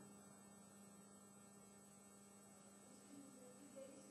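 Near silence: room tone with a steady electrical mains hum.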